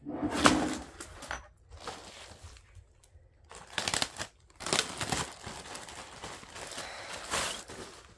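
Plastic packaging crinkling and fabric rustling in irregular bursts as items are pulled out of a shipping box and unwrapped by hand.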